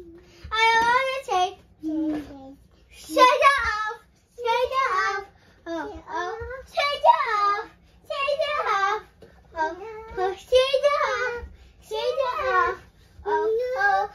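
A young girl singing without accompaniment in short, high-pitched phrases with brief pauses between them.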